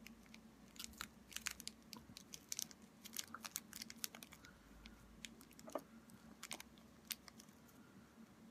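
Faint crinkling of thin clear plastic being folded and pressed by hand around a makeshift spoon head: scattered small, irregular crackles and clicks.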